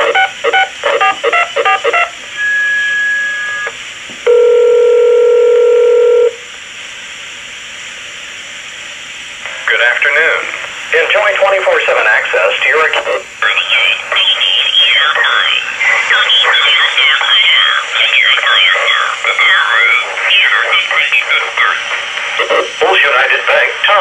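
A cordless phone call heard through a scanner's speaker: a quick run of keypad dialing tones, a short higher beep, then a single two-second ringback tone and a hissy pause before the call is answered about ten seconds in by a recorded voice message that runs on. The phone is a Uniden DX4534 voice-scramble cordless phone, its 49.8 MHz transmission picked up by a Uniden Bearcat scanner.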